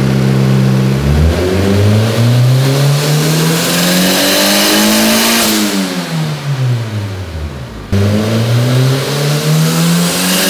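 Turbocharged Honda B18 non-VTEC four-cylinder on a dyno pull: the engine revs climb steadily under load for about four seconds, then fall away as the throttle closes. About eight seconds in the sound jumps abruptly, and the revs climb again from low.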